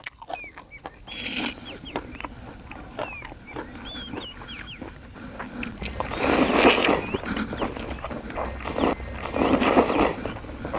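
A person slurping rice noodles in green curry off a fork: two long, loud slurps, the first about six seconds in and the second just before the end, with quieter wet chewing before them.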